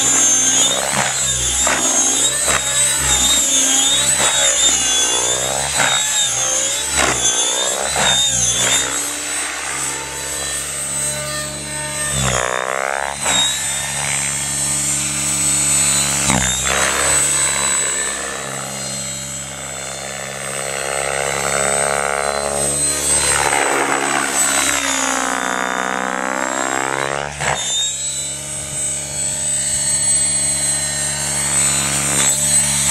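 700E electric radio-controlled helicopter in flight: a high motor whine over the rotor hum, swelling and sweeping up and down in pitch as it manoeuvres and passes by.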